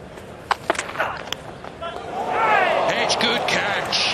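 Cricket ball struck off the bat and caught behind, heard as a few sharp knocks in the first second or so. From about two seconds in come loud shouts from the celebrating fielders, with the crowd cheering a wicket.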